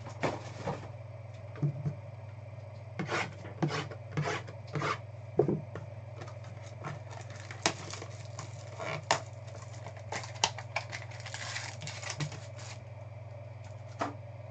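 Small cardboard card-pack boxes and a foil pack wrapper being handled and opened: scattered taps, clicks and short crinkling rustles, with a longer crinkle near the end, over a steady low electrical hum.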